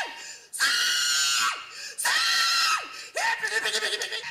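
A woman yelling hog calls into a microphone: three long, high, held calls, each dropping sharply in pitch at its end, the last one weaker.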